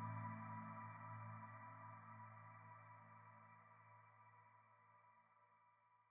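Ambient background music of sustained held tones, slowly fading out to near silence.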